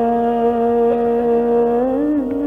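Hindustani classical vocal in Raag Bihagada: a male voice sustains one long, steady note, which begins to bend in pitch just before the end.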